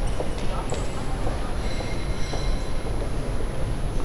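A train's low rumble, with thin high squealing tones from its wheels for about two seconds in the middle.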